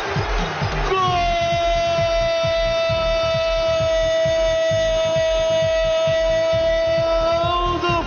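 Brazilian radio narrator's long drawn-out goal cry, one shouted note held for about seven seconds. Under it runs a music bed with a steady beat.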